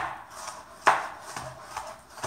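Chef's knife slicing a bell pepper into strips on a cutting board: separate sharp strikes of the blade on the board, the loudest about a second in.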